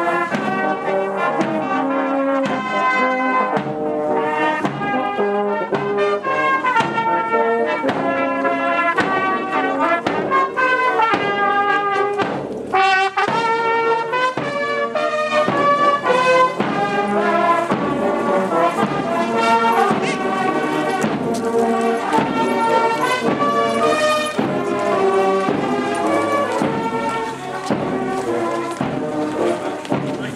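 Marching brass band playing a tune together, with trombones, cornets and tenor horns, loud and continuous.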